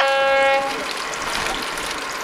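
A boat's horn holding one steady note, cutting off suddenly under a second in, leaving only background noise.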